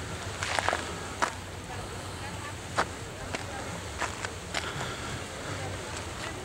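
Outdoor ambience: a steady low rumble with faint distant voices and a few scattered sharp clicks.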